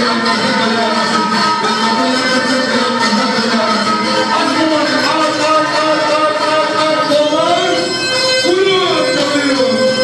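Live folk dance music led by an upright bowed fiddle, a continuous, wavering melody that carries on without a break.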